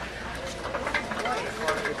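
Indistinct background voices over a steady hiss, with scattered light clicks.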